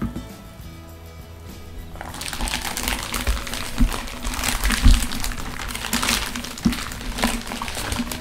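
Thin clear plastic vacuum bag crinkling as it is opened and a filament spool is pulled out of it, starting about two seconds in, with a few soft knocks from handling the spool. Background music plays underneath.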